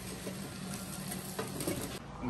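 A metal spoon stirring rice into minced meat and vegetables in a pot on the stove, with a faint sizzle and a few light clicks of the spoon.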